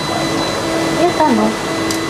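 Steady whirring machine noise with a thin, high, constant whine, and a voice briefly murmuring about a second in.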